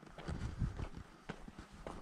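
Footsteps crunching along a dirt and gravel track, a few irregular steps a second, over a low rumble.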